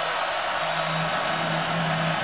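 Steady stadium crowd noise at a football game, an even hum of many voices with no single event standing out.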